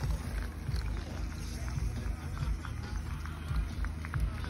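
Wind buffeting a phone microphone outdoors, an uneven low rumble, with faint scattered ticks and distant voices of spectators beside the course.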